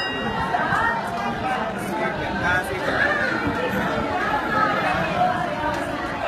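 Indistinct chatter of many voices talking at once, with no single voice standing out.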